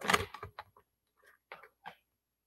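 A few faint, light clicks and taps of marker pens knocking against each other and a plastic pot as one is picked out, after the tail of a woman's voice.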